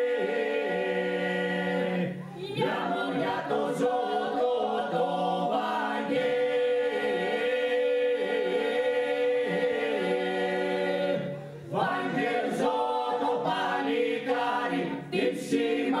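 Epirote four-part polyphonic singing, unaccompanied: mixed male and female voices hold a steady drone (the iso) beneath a lead voice and answering parts that weave above it. The sound drops away briefly about two seconds in and again about three-quarters of the way through.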